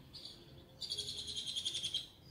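A bird calling: a short high note, then about a second of rapid high trill that slides slightly down in pitch.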